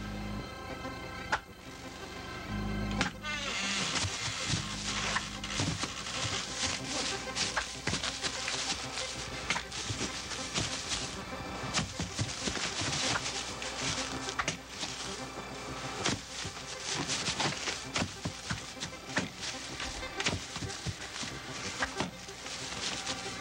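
Music score, then from about four seconds in a dense, rapid run of sharp chopping knocks and clicks: the sound effect of a magic axe hacking at a tree by itself.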